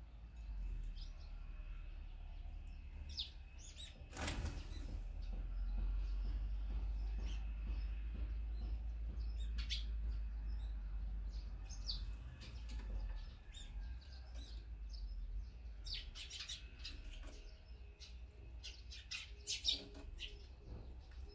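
Small wild birds at a feeder chirping in short, scattered calls that come thickest near the end, with a brief burst of wingbeats about four seconds in.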